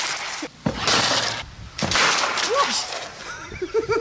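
A long green bamboo pole being split lengthwise, its fibres cracking and tearing apart in three noisy bursts of about a second each.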